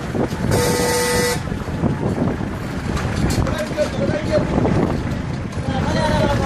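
A single car horn blast of just under a second, about half a second in, over the steady road and wind noise of a moving car.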